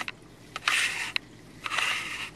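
A camera lens being popped off the camera close to the microphone: two short scraping bursts with sharp clicks.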